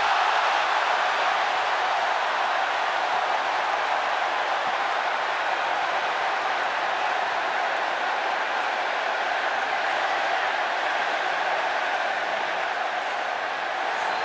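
Large stadium crowd cheering and applauding in one steady wash of noise, easing slightly near the end.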